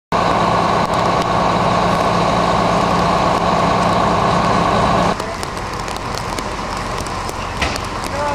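A fire truck's engine runs loud and steady at a constant pitch. It cuts off abruptly about five seconds in, leaving a quieter, even wash of outdoor noise.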